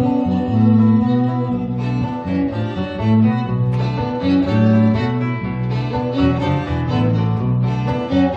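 Instrumental jazz passage: two violins bowing the melody over guitar and a walking bass line.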